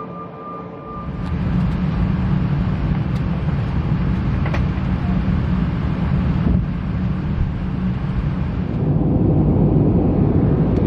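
Airliner cabin noise in flight: a steady, even low rumble of engines and rushing air that comes in about a second in and holds, with a few faint clicks.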